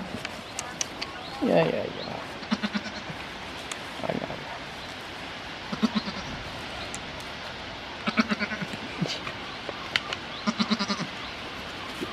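Goats bleating: one longer, wavering call about a second and a half in, followed by a string of short, stuttering low calls every second or two.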